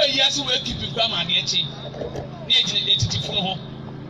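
A man preaching into a microphone over a public-address system, in two short spoken phrases the recogniser did not write down, with a steady low hum underneath.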